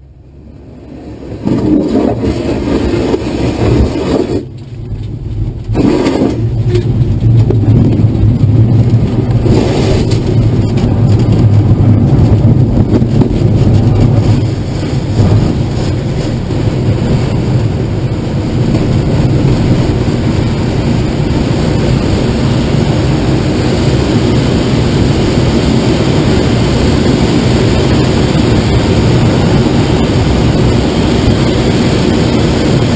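Glider cockpit noise during an aerotow takeoff run: the wheel rumbles over a dirt runway amid rushing air, with a tow plane's engine running ahead. The noise builds over the first two seconds. About halfway through, the heavy rumble eases into a steadier rush of air as the glider leaves the ground.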